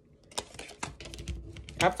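A few light, irregular clicks and taps from hand-handled objects close to the microphone, like typing or tapping. A voice begins near the end.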